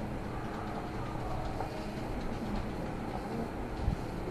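Classroom background noise: a steady low rumble with faint, indistinct murmuring, and a soft thump near the end.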